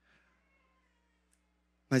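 A pause in a man's amplified speech: near silence with a faint, thin wavering sound in the first second, then his voice comes back in just before the end.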